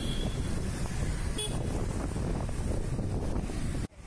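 Wind buffeting the microphone on a moving scooter, over steady engine, road and traffic rumble. A brief higher-pitched sound comes about a second and a half in, and the sound cuts off suddenly just before the end.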